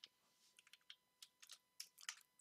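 Faint computer keyboard typing: several separate keystrokes, irregularly spaced.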